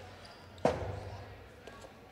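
Jai-alai pelota striking the fronton wall: one sharp crack about two-thirds of a second in, with a short echo in the hall.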